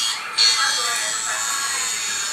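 Sound effect of an electric tattoo machine buzzing steadily, growing louder about half a second in.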